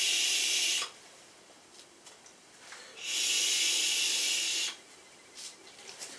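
Two long airy hisses of heavy vaping on an e-cigarette, one ending just under a second in and another from about three seconds to nearly five, with a few faint knocks near the end.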